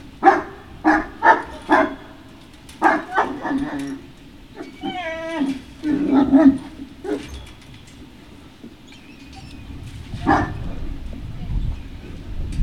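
Great Dane barking off and on: four quick barks in the first two seconds, more barks around three and six seconds, a drawn-out wavering yelp near five seconds, and a single bark about ten seconds in.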